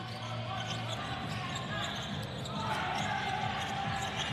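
Basketball game sound in an arena: a steady wash of crowd noise with a basketball bouncing on the hardwood court.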